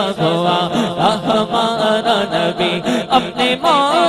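Naat recitation: a male reciter chants a fast, rhythmic refrain on a steady beat, then breaks into a wavering, ornamented sung line near the end.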